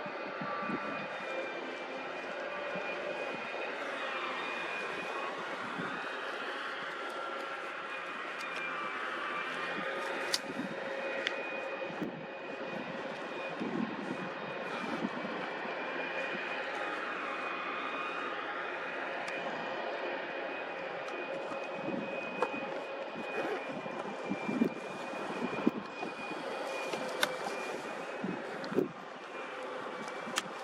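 Heavy construction machinery at a concrete pour running steadily: engine drone with a held high whine that drifts slightly in pitch. Occasional sharp metallic clanks, more frequent near the end.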